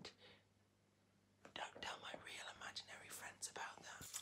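A second and a half of near silence, then a man whispering faintly.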